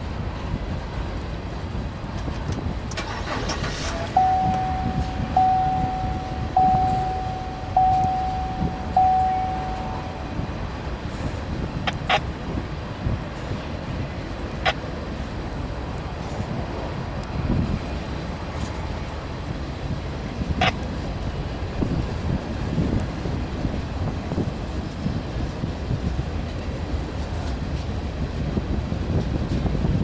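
A freight train of open-top gondola cars rolling past with a steady low rumble of wheels on rail. Between about four and ten seconds in, a clear ringing tone sounds five times, about a second apart. A few sharp clicks stand out later, about three in all.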